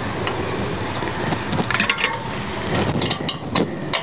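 Handling noise as a hub-motor front wheel is worked into a bicycle fork: rustling and scraping throughout, with a cluster of sharp metallic clicks near the end as the axle seats.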